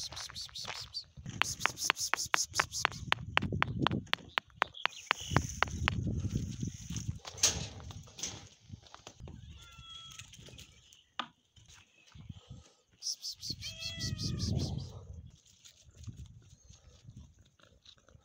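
Domestic cats meowing: one short meow about halfway through and another a few seconds later. Rapid crunching footsteps on gravel come in the first seconds.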